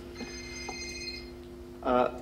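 A high electronic ringing tone, several pitches held together for about a second, over a steady low hum; a short voice sound comes near the end.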